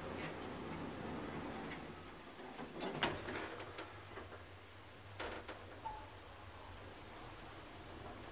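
KONE Monospace machine-room-less traction elevator heard from inside the car as it starts to travel up: a steady low hum with a couple of sharp clicks about three and five seconds in, and a short faint tone near six seconds.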